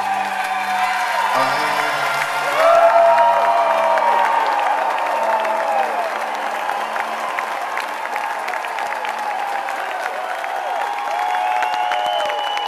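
A symphony orchestra holds a sustained closing chord that fades out over the first half. Over it, a large arena crowd applauds, cheers and whoops, and the applause carries on after the music has gone.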